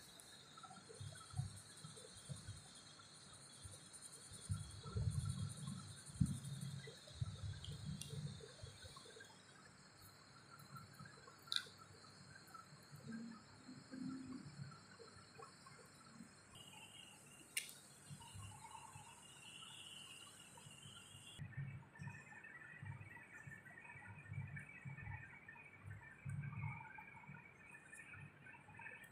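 Faint soft thumps and rubbing of a cotton bud dabbing paint onto paper and hands shifting on the sheet, over a steady high-pitched background tone. Two sharp clicks stand out, one near the middle and another a few seconds later.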